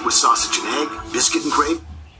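A television advertisement's voiceover speaking over background music, played from a screen's speaker. The speech stops shortly before the end.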